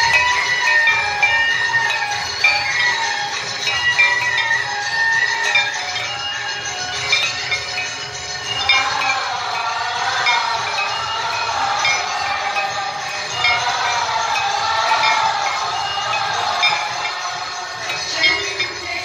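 Hand bells ringing continuously under a sung devotional aarti hymn, the melody running throughout.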